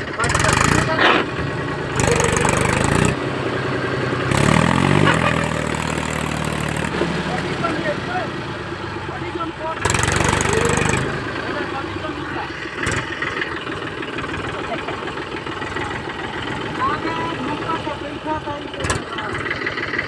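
Mahindra 275 DI tractor's three-cylinder diesel engine labouring in deep mud, revved hard in four bursts with quieter running in between. The longest burst climbs in pitch about five seconds in.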